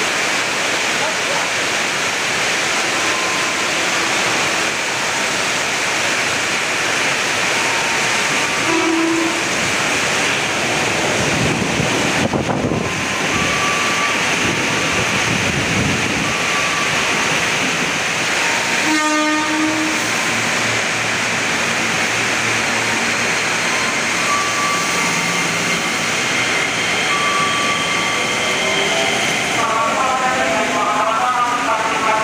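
Electric commuter trains (KRL, a JR 205 series among them) running through a station at speed without stopping: a loud, steady rush of wheels on rails as the cars pass close by.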